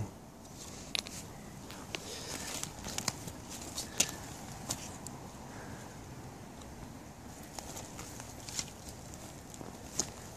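Footsteps through leaf litter and twigs on a forest floor, with scattered light crackles and snaps over a faint steady outdoor background.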